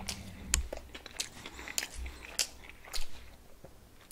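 A person chewing a mouthful of Burger King double cheeseburger close to the microphone, with sharp wet mouth clicks roughly twice a second.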